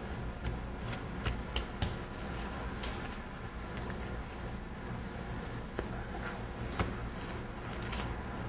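Plastic wrap crinkling and rustling as hands press and fold it around a slab of gingerbread dough, with scattered small crackles.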